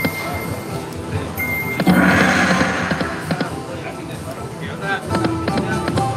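Dancing Drums slot machine playing its game music and chiming effects as the reels spin, with a louder swell about two seconds in, over background casino voices.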